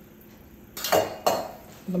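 Two sharp glass clinks about half a second apart, each with a short ring: glass bottles being set down or knocked on a countertop.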